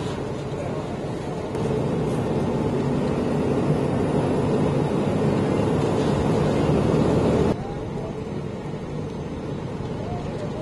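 Fire apparatus engine running steadily. It gets louder about a second and a half in, then drops back abruptly a couple of seconds before the end.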